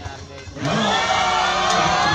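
Crowd of volleyball spectators breaking into loud, sustained shouting and cheering about half a second in, many voices at once, with a sharp smack near the onset as the rally is played.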